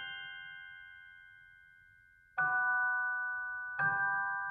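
Instrumental lullaby of slow, bell-like chimed chords. One chord rings out and fades, and two more are struck, a little past halfway and near the end.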